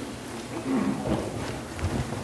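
Footsteps across the platform to the lectern: a few dull low thuds in the second half, over quiet room sound.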